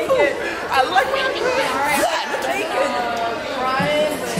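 Several people's voices chattering over one another, with no clear words.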